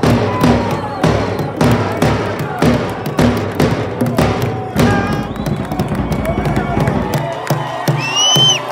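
A football crowd singing a chant together over a steady beat of sharp strikes, about two a second. The strikes are loudest in the first five seconds and fainter after that.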